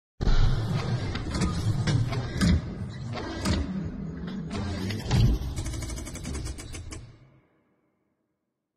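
Animated logo-intro sound design: a low rumble under a string of metallic clanks and mechanical clicks, with a quick run of clicks near the end before it fades out about seven seconds in.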